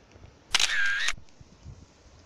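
Camera shutter sound effect: one sharp click with a short wavering tone, a bit over half a second long, about half a second in.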